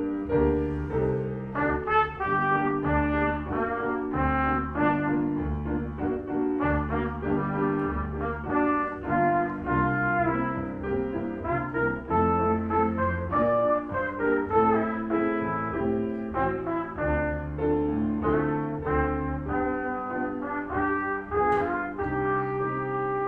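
A child playing a melody on trumpet, accompanied by a grand piano.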